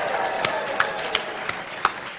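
A man clapping his hands close to the microphone, about three sharp claps a second, over a room of people cheering and applauding.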